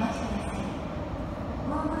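Steady low rumble of a subway train arriving at the platform, under the tail end of a station PA announcement.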